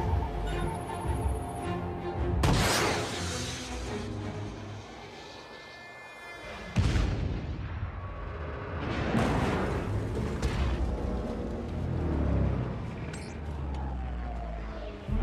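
Film score playing under sound effects of a missile launch: a whoosh a couple of seconds in, then a sudden explosion about seven seconds in, followed by more booms.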